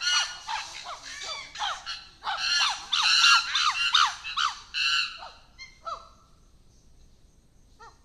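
An agitated male chimpanzee screaming in a fast series of short, high calls that fall in pitch, while another male calms him. The calls die down about five seconds in, with a few faint ones after.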